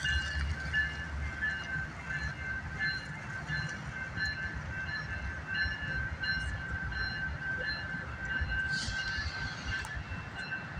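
Railroad grade-crossing bell ringing with rapid, steady dings over the low rumble of a BNSF diesel freight locomotive passing through the crossing.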